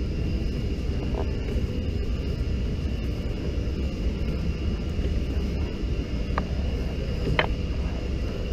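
Steady low rumble with a faint constant high-pitched tone, and two short light clicks near the end.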